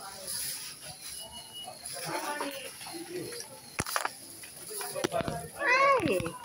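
Indistinct voices of people over a faint steady hiss, with two sharp clicks in the second half and a rising exclamation near the end.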